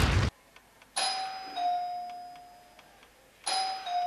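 Doorbell chime rung twice, each time a two-note ding-dong, about two and a half seconds apart, each note ringing on and fading. Just before, a loud burst of the logo's music cuts off abruptly in the first moment.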